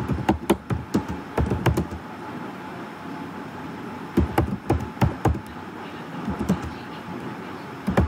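Computer keyboard being typed on: short runs of quick keystroke clicks with pauses of a second or two between them.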